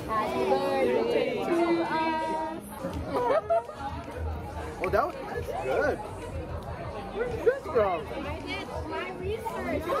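A man and a woman chatting and laughing at a table, their words indistinct, with music faintly underneath.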